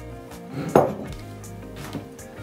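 A small ceramic jug set down on a wooden chopping board: one sharp knock a little under a second in, with a fainter tap near the end, over steady background music.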